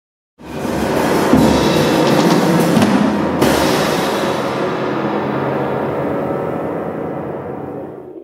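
Loud live improvised music on drum kit and piano, bursting in suddenly out of silence as a dense crash of cymbals and drums over low piano. The cymbal wash cuts off about three and a half seconds in, and the remaining sound slowly dies away.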